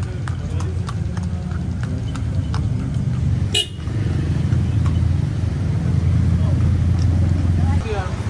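Hooves of a cart horse clip-clopping on asphalt over the steady low rumble of car engines in slow traffic. The rumble grows louder in the second half, and there is one short sharp sound about three and a half seconds in.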